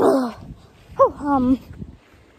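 Wordless vocal sounds from a person's voice close to the microphone: a short falling sound at the start, then a longer one about a second in that rises and then wavers.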